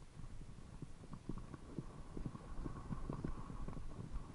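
Mountain bike riding fast down a dry dirt singletrack: tyres crunching over dead leaves and the bike rattling with irregular knocks over bumps, over a constant low rumble.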